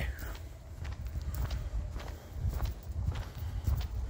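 Footsteps of one person walking, a series of faint ticks over a low rumble on the handheld microphone.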